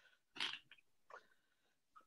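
Near silence with a faint, short breath about half a second in and a fainter one just after a second.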